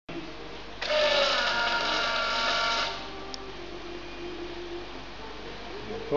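Electric fuel pump of an EFI turbo Shovelhead whining steadily for about two seconds as it primes at key-on, then stopping. A faint steady hum and a single click follow.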